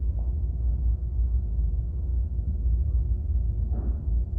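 Steady low rumble with a faint steady hum underneath, no clear event.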